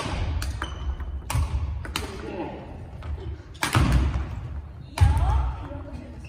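Badminton rackets hitting shuttlecocks in attack shots, sharp smacks that echo around a large sports hall, landing about every one to two seconds. Four hits are loudest: at the start, about a second in, about halfway and near the end, each with heavy thuds of feet landing on the wooden floor.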